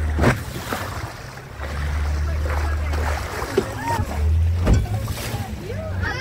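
Motorboat engine drone with water rushing and splashing along the hull. The drone fades out briefly twice. There are two sharp thumps, one near the start and one near the end, from the hull slapping down on the waves.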